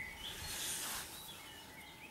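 Faint rustle of a hand scraping through loose soil, swelling about half a second in and then fading, with a few faint bird chirps.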